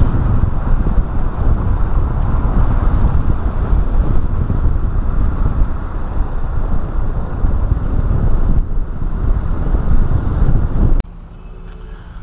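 Wind rushing over a camera mounted outside a moving car, together with the car's road noise: a loud, uneven rush, heaviest in the low range. It cuts off suddenly about a second before the end.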